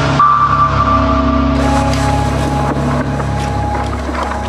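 Electronic dance music from a DJ mix: sustained synth tones over a low bass drone, with the high end filtered out at first and opening back up about a second and a half in.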